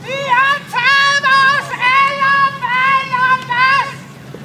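A single high voice singing a slow melody in held notes with short glides between them.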